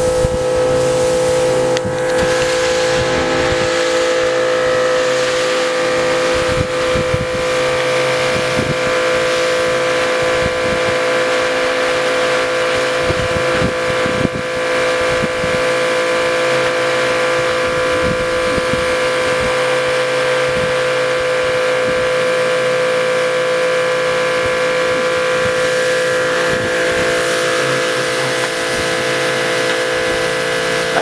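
A pressure washer running steadily, its motor and pump holding one constant pitch while the wand sprays water.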